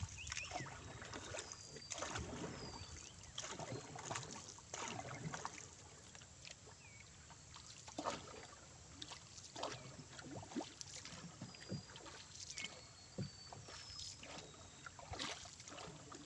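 Small wooden boat being paddled with a single-bladed wooden paddle: irregular splashes of the paddle dipping and pulling through the water, with short knocks in between.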